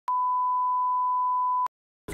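A single steady electronic beep, one pure unwavering tone held for about a second and a half before it cuts off sharply.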